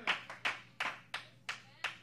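Hand clapping in a steady rhythm, about three claps a second, during a pause in a sermon.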